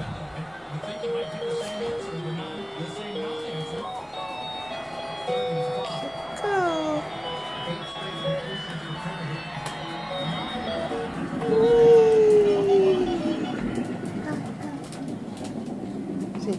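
Electronic melody from a ride-on toy car's button sound panel: a simple tune of short stepped beeping notes, with a few sliding sound effects, the loudest a long falling tone about three-quarters of the way in.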